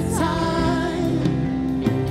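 A woman singing a slow worship song into a microphone over instrumental accompaniment. Just after the start her voice slides up into a long held note.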